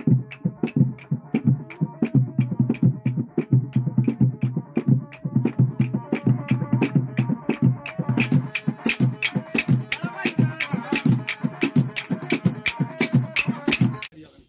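Several tall hand drums played together in a fast, steady rhythm of about four strokes a second. The strokes turn sharper and brighter about eight seconds in, and the drumming stops suddenly at the end.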